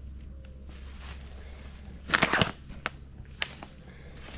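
Footsteps through undergrowth and dead leaves: a few faint steps, then a short burst of louder rustling and cracking about halfway through, followed by a couple of single snaps.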